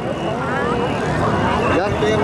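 A voice talking over a steady low rumble.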